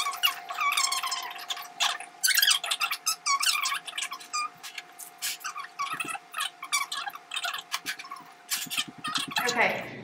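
Cardboard boxes and plastic-wrapped food packages being picked up, moved and set down on a wooden table: short knocks and crinkling plastic, over a faint steady hum that stops near the end.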